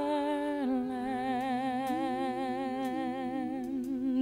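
A singer holds one long sung note with vibrato over soft musical accompaniment.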